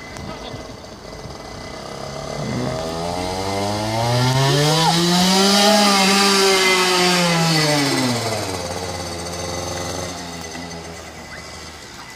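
Small dirt bike's engine riding past: its note climbs steadily, is loudest and highest about halfway through as the bike passes close by, then sinks again as it moves off.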